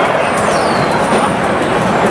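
Loud, steady din of a busy food market, with no single sound standing out.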